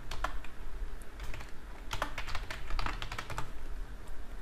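Computer keyboard typing in several quick bursts of keystrokes, with a low steady hum underneath.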